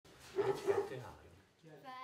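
A group of children's voices: a burst of short sounds in the first second, then, from about one and a half seconds in, the children singing a held note together.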